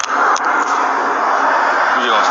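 Steady roadside traffic noise picked up through a police body camera's microphone, with a couple of short clicks near the start.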